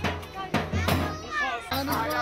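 Festive music with a steady drum beat, mixed with the voices of a lively crowd, some of them high-pitched like children's.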